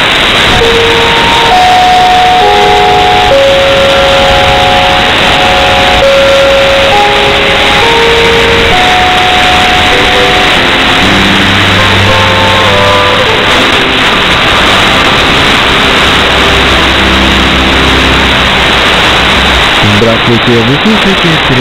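Instrumental music received over shortwave radio, buried in a heavy hiss of static. A melody of held notes plays throughout, and lower bass notes join about halfway through.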